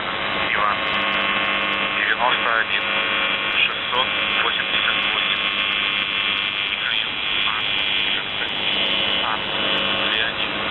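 Shortwave radio reception of the Russian military station UVB-76, 'The Buzzer', on 4625 kHz: a steady buzz tone under static, with several short gliding warbles laid over it, the first near the start, then around two and four seconds in.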